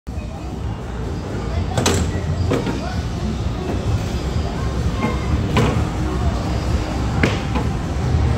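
Arcade mini-bowling lane ambience: a continuous low rumble of balls rolling on the lane, with several sharp knocks, under background voices and arcade music.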